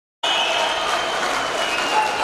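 Arena crowd applauding and cheering, with voices shouting over it; the sound cuts in sharply just after the start.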